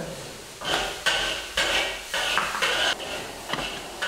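Metal spatula scraping and scooping rice, with its crust, out of a large iron wok. About seven quick scrapes, roughly two a second, beginning about half a second in.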